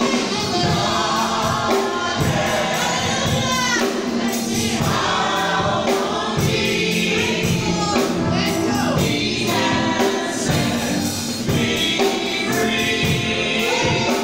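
Gospel choir singing in parts with live band accompaniment, over a steady drum beat.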